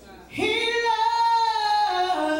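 Female gospel lead vocalist singing into a microphone: after a brief dip she comes in about a third of a second in on one long held note, which steps down in pitch near the end.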